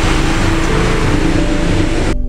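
A steady, loud rushing noise with soft background music notes held underneath.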